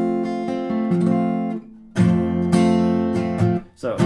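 Steel-string acoustic guitar strumming an F major chord, played with the thumb over the neck on the low E string: two strums about two seconds apart, each left to ring out.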